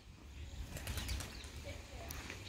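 Quiet outdoor ambience: a faint, uneven low rumble of wind on the microphone with light rustling, and no distinct event.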